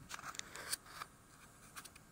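Faint clicks and scrapes of fingers handling a small camera right at its microphone: a quick cluster in the first second and a couple more near the end.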